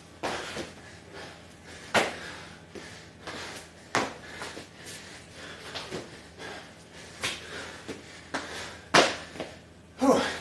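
Thuds of a person doing burpees, hands, body and feet hitting the floor about every two seconds, the loudest near the end.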